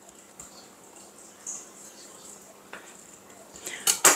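Faint handling sounds: a few soft taps and light knocks as a serrated knife and pieces of soft dough are moved on a stone countertop, the clearest about one and a half seconds in.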